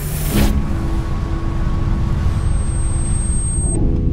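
Converted Unimog truck driving on a rough dirt track, heard from inside the cab: a steady low engine and road rumble with a faint steady hum over it.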